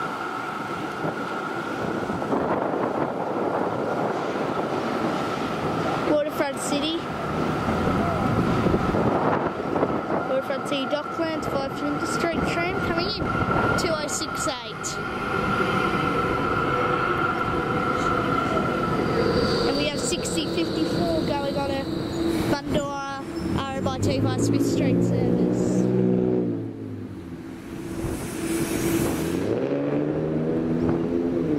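Melbourne electric trams, a B-class and an E-class, running close past a tram stop. A steady whine holds through the first half, with clicks and knocks from the wheels on the rails. Near the end a motor tone rises in pitch as a tram gets under way.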